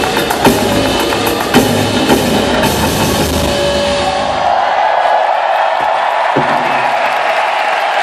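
Live band with a drum kit playing the last bars of a song, recorded loud from within an arena audience. The music stops about four seconds in, and the crowd goes on cheering and screaming.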